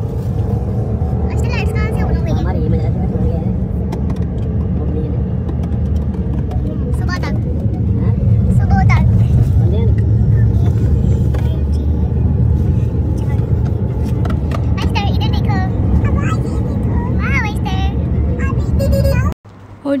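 Steady low rumble of a car's engine and road noise heard inside the moving car's cabin, with short bits of voices now and then; the rumble cuts off suddenly near the end.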